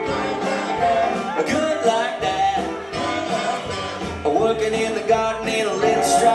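Live country band playing a honky-tonk song: guitars, drums and upright bass in an instrumental stretch between sung lines.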